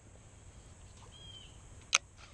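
Quiet outdoor background with a short, thin bird chirp about a second in, then one sharp, loud click near the end.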